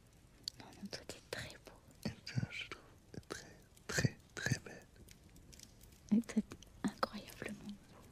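Whispered speech in short, breathy phrases broken by brief pauses, with small mouth clicks.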